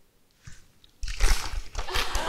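Near silence for about a second, then paper and shirt fabric rustling loudly as a paper sign is pulled off the belly.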